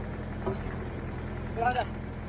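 An engine running steadily with a low, even hum, with a single knock about half a second in and a man's brief call near the end.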